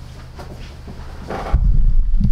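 Quiet room hum, then about one and a half seconds in a sudden loud, low, muffled rumble of microphone handling noise.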